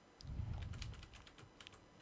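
Faint, irregular clicking of computer keyboard keys, a quick run of clicks.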